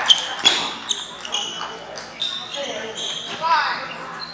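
Table tennis balls clicking off paddles and tables in a large hall, irregular sharp ticks from several rallies at once, with voices in the background and a brief call near the end.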